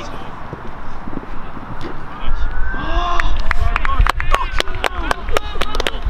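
Players shouting and cheering as a goal goes in, followed by a run of sharp handclaps over a low rumble.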